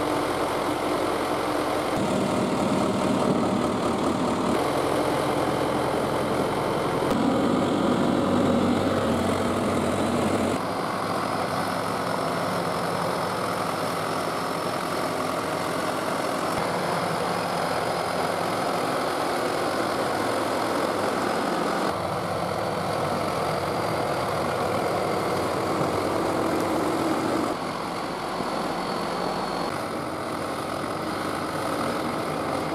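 1976 John Deere 450-C crawler bulldozer's engine running steadily as the machine pushes a load of rock and gravel with its blade. The sound shifts abruptly several times.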